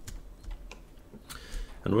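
A few scattered, light clicks from a computer keyboard and mouse. A man's voice starts just before the end.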